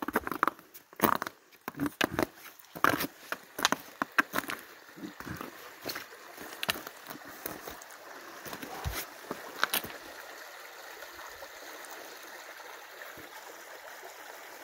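Footsteps on a rocky, icy trail, a string of sharp crunches and knocks. They thin out in the second half as the steady flow of a small stream takes over.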